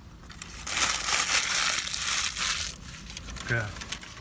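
Fast-food bag and wrappers crinkling and rustling as they are handled and rummaged through, loudest for about two seconds and then dying away.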